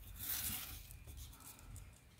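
A paper scratch-off lottery ticket being slid and shuffled across other tickets: a soft brushing rustle in the first second that fades away.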